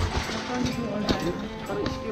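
Background music with shouting voices of players, and a few short knocks that fit running steps or ball touches on the artificial turf.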